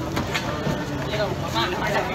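Voices talking over a steady rumble of street traffic.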